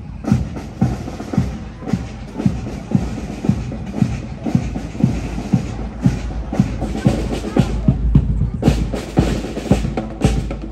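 Marching band drums beating a steady marching cadence, about two beats a second, with snare drums and sharp stick clicks over the bass drum.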